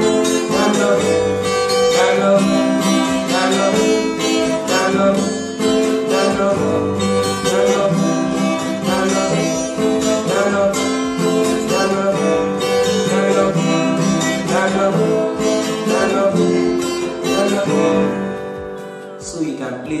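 Acoustic guitar played continuously, strummed chords with picked melody notes on the upper strings at a slow pace, dying away near the end.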